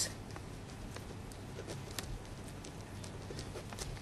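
Quiet room tone with a steady low hum and scattered faint, brief clicks and ticks during a pause in speech.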